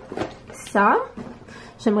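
Mostly speech: a woman's voice, with one short spoken sound about a second in and the start of a sentence at the very end.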